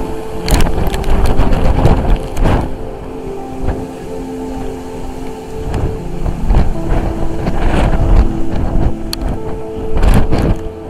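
Strong wind buffeting the microphone in uneven gusts, a low rumble that swells and dips, with faint steady tones running underneath.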